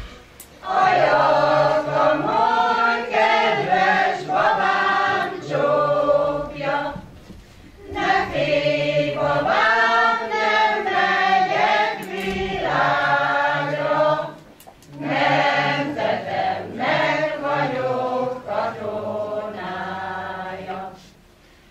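Hungarian amateur folk-song choir of mostly women's voices with a few men, singing unaccompanied in unison. The song runs in long phrases of several seconds, with short breaks for breath about seven seconds in and again near fifteen seconds.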